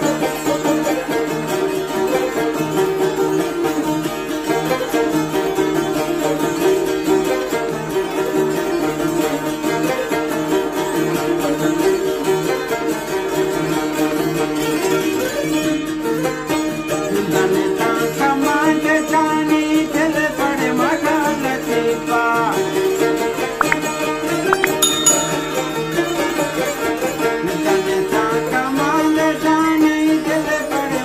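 Balochi folk music played on plucked strings, rabab and benju, a fast-running melody over a steady drone. From a little past halfway, a higher gliding, wavering melody line joins in.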